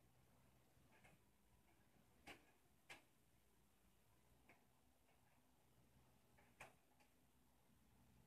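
Near silence: a faint low hum with a few brief, faint clicks, the two loudest close together about two and a half to three seconds in and another near six and a half seconds.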